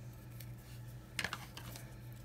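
Light clicks and rustles of cardstock strips being handled on a tabletop as a pair of scissors is picked up, with a short cluster of sharp clicks a little past halfway.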